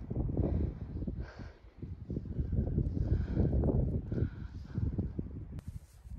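Wind buffeting the microphone in gusts: a low rumble that swells and dips.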